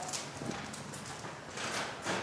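A few sharp clacks and knocks, one near the start and one about half a second in, then a longer, louder noisy rush near the end, over steady market background noise.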